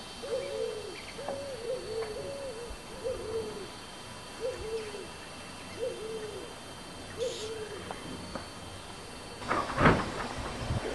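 A dove cooing: a string of short low coos, each falling away in pitch, repeated about every second or so. A loud knock comes near the end.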